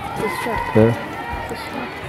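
Brief snatches of a person's voice between louder talk, over faint outdoor background noise.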